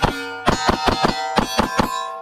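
Rapid fire from a compact Smith & Wesson Shield Plus pistol: a fast string of about ten shots, with metal steel targets ringing after the hits. The ringing fades just after the last shot near the end.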